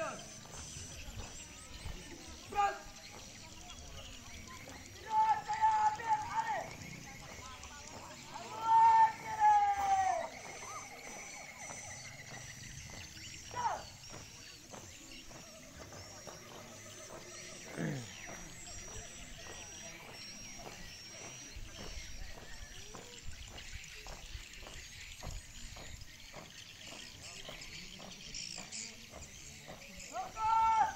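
A marching squad leader shouting several long, drawn-out drill commands in the first half. Later, a regular rhythm of stamping marching footsteps from the squad.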